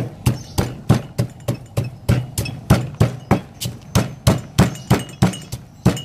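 Stone pestle pounding in a granite mortar, steady strokes about three a second, crushing peanut brittle.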